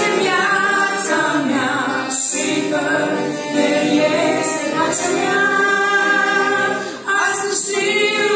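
Three women singing a Romanian hymn in harmony into microphones, accompanied by a piano accordion. Short breaks between phrases come about two seconds in and about seven seconds in.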